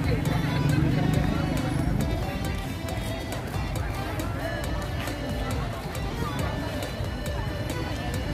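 Busy festival street: crowd chatter mixed with music playing, which has a quick ticking beat. A low rumble fades out about two seconds in.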